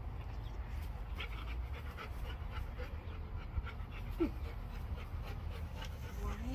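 Dogs panting in quick breaths, with one short falling whine about four seconds in, over a steady low rumble.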